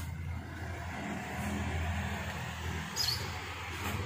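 Engine of a Toyota MPV running at low revs as the car rolls slowly up close, a steady low hum that grows louder as it nears. A brief high chirp sounds about three seconds in.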